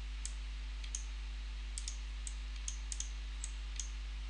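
About nine light, irregular clicks of a computer mouse as settings are adjusted, over a steady low electrical hum.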